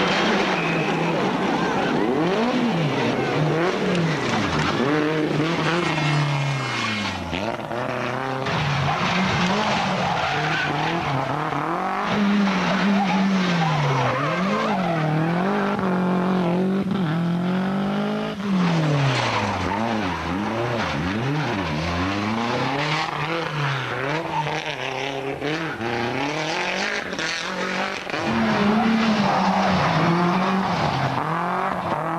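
Toyota Celica GT-Four ST165 rally car's turbocharged four-cylinder engine revving hard, its note climbing and dropping again and again through gear changes and lifts into corners, with tyres skidding on the road.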